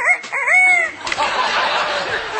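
An African grey parrot imitating a rooster's cock-a-doodle-doo: a short run of pitched calls ending in a long, falling note. It is followed about a second in by audience laughter.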